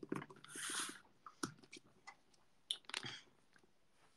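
Scattered clicks and rustles of a hand-held phone being moved close to its microphone, with a short hissing swish about half a second in and a cluster of clicks about three seconds in.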